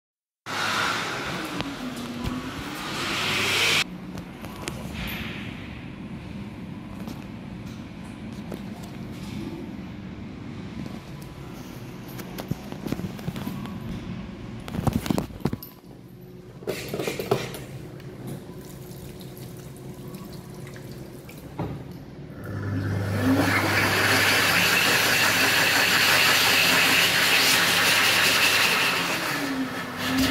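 Hokwang hand dryer (sold as the Dolphin Velocity ECO) starting up about 23 seconds in and blowing steadily to the end: a loud rush of air over a low motor hum, its tone dipping and rising now and then. A similar loud rush sounds for a few seconds at the very start, with quieter washroom noise and a few knocks in between.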